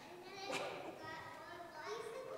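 Young children's voices, faint and high, calling out answers in a reverberant large hall.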